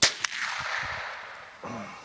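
A single rifle shot: a sharp crack with a second short crack about a quarter second after it, then an echo that fades over about a second and a half.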